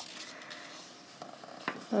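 A page of a paperback colouring book being turned by hand: a soft paper rustle with a light tick near the end.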